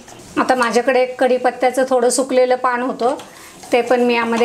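A woman speaking, with no other sound standing out.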